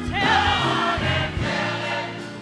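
Gospel choir singing together with band accompaniment, the full choir coming in strongly just after the start and holding a sustained chord over a low bass line.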